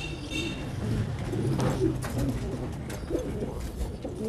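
French meat-breed pigeons cooing in low, repeated coos.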